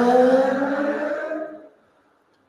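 A woman's long drawn-out vocal hum, rising slowly in pitch and fading out about three-quarters of the way through.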